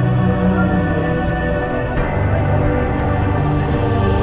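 Background music of sustained, slow-moving chords over a low held bass, changing chord about two seconds in.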